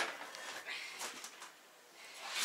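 Faint handling noises from a child's folding chair being picked up: light rustling and a few soft knocks.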